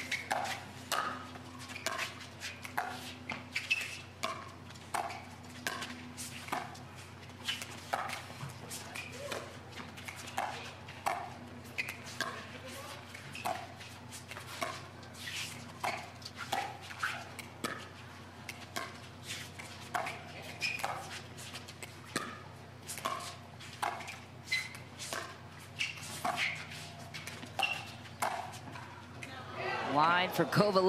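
Pickleball paddles striking a hollow plastic ball in a long rally: a steady run of sharp pops, more than one a second.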